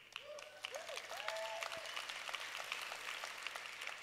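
Large audience applauding, the clapping swelling over the first second and easing toward the end, with a few short pitched calls from the crowd in the first two seconds.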